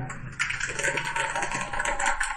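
A small group of people clapping their hands in applause. The quick, dense clapping starts about half a second in.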